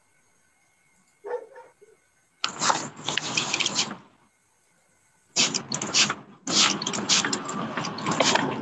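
Stray background noise picked up by a video-call participant's unmuted microphone: a short burst about a second in, then harsh, noisy bursts from about two and a half seconds on.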